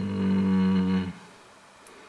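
A man's held hesitation sound, a level-pitched hum lasting about a second.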